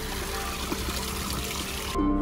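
Steady trickle and splash of water running down a small cascade in a stone garden water channel.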